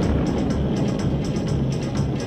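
Cartoon soundtrack music mixed with the low, steady rumble of a flying spaceship's engine sound effect.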